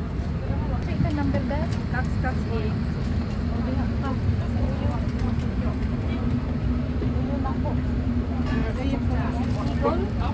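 Airbus A330-300 cabin during boarding: a steady low hum with faint chatter of passengers' voices over it.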